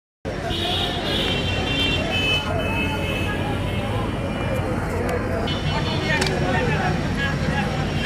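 Many people talking at once, no single voice clear, over a steady low engine rumble.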